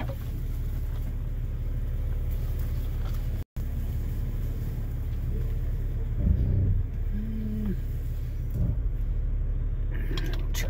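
Vehicle engine running at low speed, heard from inside the cab as it crawls over a rough, muddy trail, with a few thumps about six seconds in and a short squeak just after. The sound cuts out for an instant about three and a half seconds in.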